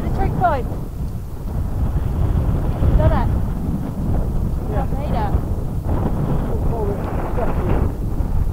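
Wind buffeting the microphone of a camera riding on a moving tandem bicycle: a steady low rumble, with a few brief snatches of voices.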